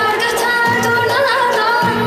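Azerbaijani folk music: a female voice singing an ornamented, wavering melody over a small ensemble of long-necked lute, accordion and kamancha.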